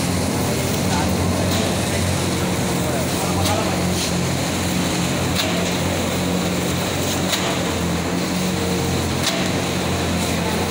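Automatic rotary paper reel-to-sheet cutting machine running steadily with a low hum. A sharp click comes about every two seconds, in step with its cutter working at about 31 cuts a minute as it cuts the web into sheets.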